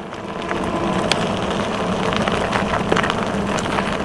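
E-bike riding over a gravel dirt road: steady tyre noise and wind on the helmet camera's microphone, with a faint steady hum underneath and a few small clicks.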